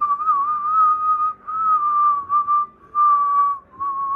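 A person whistling a steady high note in four short phrases with brief breaks, the pitch wavering slightly.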